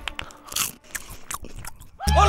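Crisp baked snack pieces crunching as they are bitten and chewed: a few irregular crunches with short quiet gaps, the loudest about half a second in.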